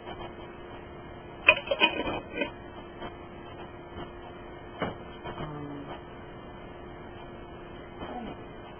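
Kitchen clatter of items being handled: a quick run of sharp knocks and clicks about a second and a half in, then a single knock near the middle and a few faint taps, over a faint steady hum.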